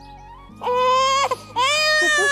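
An infant crying: two high wails, the first about half a second in and a second starting about a second and a half in.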